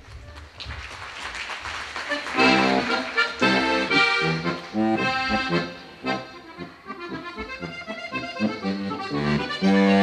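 Diatonic button accordion played solo, an instrumental tune of chords over bass notes. It starts softly and comes in loud about two seconds in, eases off briefly around the middle, then builds again.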